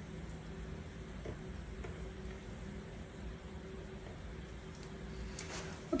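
Faint steady low hum with a quiet rumble underneath, no distinct events.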